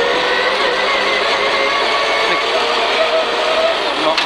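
Peugeot 306 rear-wheel-drive rally car's engine pulling hard at high, fairly steady revs, heard from inside the cabin over a constant hiss of tyre and road noise.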